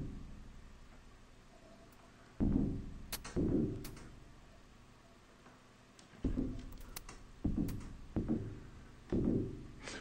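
Sparse, irregular drum-like hits from a Eurorack modular synthesizer, played by a generative rhythm script on a Crow module that puts probabilities on each note. About six short thuds, each dying away over about a second, come unevenly spaced with long gaps. The pattern has lost its beat and drifted into a very long, uneven one.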